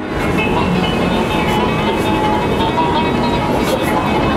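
Background music playing in a busy shopping street, over a loud, steady din of street noise with low rumble.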